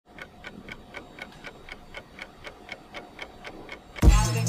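Clock-like ticking sound effect, even and quick at about four ticks a second.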